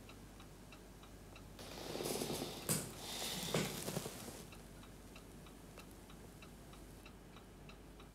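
A clock ticking faintly and evenly, about two ticks a second. A soft rustling swell with a click or two rises and fades in the middle.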